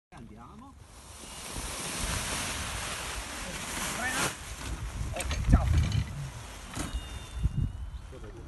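Rushing wind and fabric noise as a paraglider wing is pulled up and fills overhead, swelling from about a second in and easing off after about four seconds. Short shouts and a few low thumps follow as the wheeled launch chair runs down the slope.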